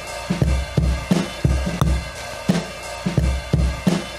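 A classic acoustic drum-kit loop of kick, snare and hi-hats playing back at 87 BPM. The groove is loose and human-played, with some hits, the snare above all, landing slightly early and off the grid.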